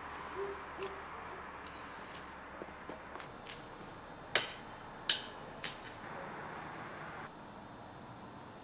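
An owl hooting twice, faintly, about half a second in, then a few sharp clicks, the loudest two about a second apart, over a steady hiss that drops off near the end.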